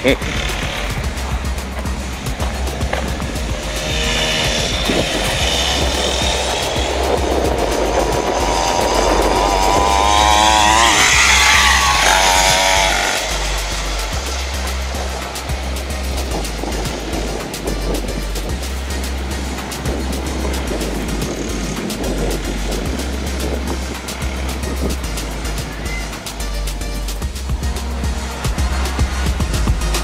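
Electronic music with a steady beat, over a small 50cc dirt bike engine that revs up with rising pitch about eight to twelve seconds in, then falls away.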